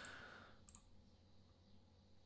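Near silence: room tone with a faint click about two thirds of a second in.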